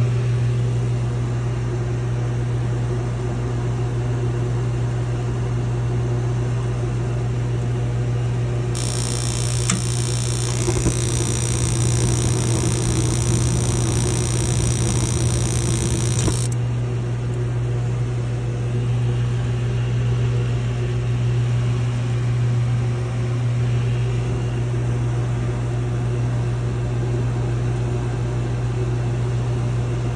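Mr. Heater Big Maxx MHU50 gas unit heater's combustion air blower running with a steady hum. About nine seconds in, the gas burners light with a hiss that holds for about eight seconds and then cuts off suddenly as the flame shuts off. The owner doubts that a flame dropping out this soon is normal operation.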